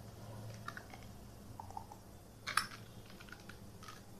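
Computer keyboard typing: scattered, light key clicks, with one sharper click about two and a half seconds in, over a faint low hum.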